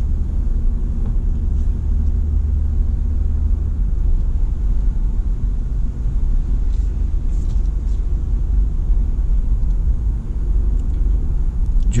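Steady low rumble of a car's engine and tyres on the road, heard from inside the cabin while driving slowly.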